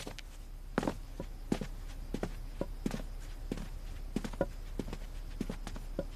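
Footsteps of two people walking together, sharp steps at slightly uneven spacing, about three a second, over a faint low room hum.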